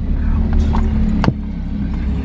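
Steady low rumble of a car driving, heard from inside the cabin, with one sharp click a little over a second in.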